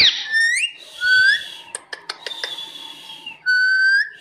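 Rose-ringed parakeet whistling: a falling-then-rising sweep, short rising notes and held high notes, with a few sharp clicks in the middle.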